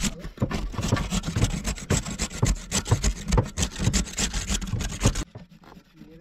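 Cabbage being grated on a stainless-steel box grater: quick, repeated scraping strokes that stop suddenly about five seconds in.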